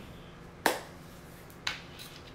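Two sharp taps on a tabletop, about a second apart, as a hand handles a tarot deck.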